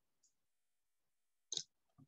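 Near silence broken by a faint, short click, then a single sharp click about one and a half seconds in.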